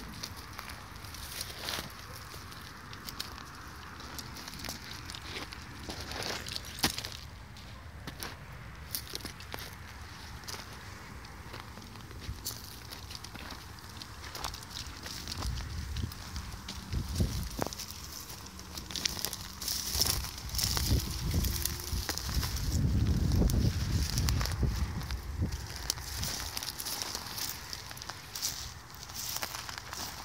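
Footsteps crunching through dry grass and loose stony ground, with scattered crackles and rustles. A low rumble rises about halfway through and fades near the end.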